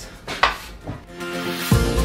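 A single short metallic clink of a steel plastering trowel against the hawk about half a second in, then background music with a steady beat comes in and becomes the main sound in the second half.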